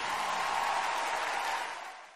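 Audience applause filling a large hall after a song ends, fading out near the end.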